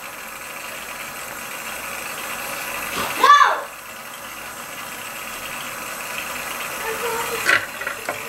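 Bathroom tap running steadily into a sink, with a short click near the end.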